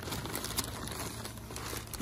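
Plastic zip-top bags crinkling as they are handled: a continuous rustle made of many small crackles.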